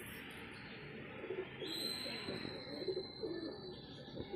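Male highflyer pigeon cooing: a run of low, warbling coos starting about a second in. A thin, steady high whistle-like tone runs alongside from about a second and a half in.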